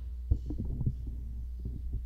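Low thumps and knocks of a stand microphone being handled and adjusted. The loudest bump comes about a third of a second in, with a run of smaller ones after it and a few more near the end. A steady mains hum sits under it.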